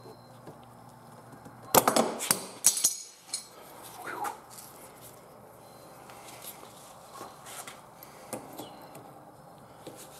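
Metal tools and jack parts clanking on a workbench: a quick cluster of sharp, ringing metallic knocks about two seconds in, a couple more soon after, then occasional light clicks and taps.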